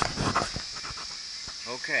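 Handling knocks and rustle from a camera being steadied in the first half-second, then a steady faint hiss.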